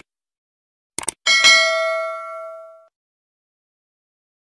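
Subscribe-button sound effect: two quick clicks about a second in, then a notification bell ding that rings out and fades over about a second and a half.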